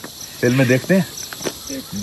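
An insect chirping steadily, about three short, high chirps a second.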